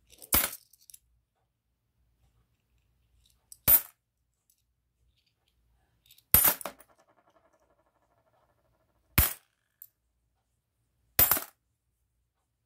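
Korean 500-won coins set down one at a time with sharp metallic clinks, five in all, about three seconds apart, as each is checked for its mint year. After the third clink a coin rattles faintly for about two seconds as it settles.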